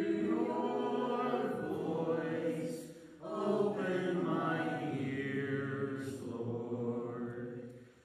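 Voices singing a slow sacred chant in long held notes. The phrases break briefly about three seconds in and again near the end.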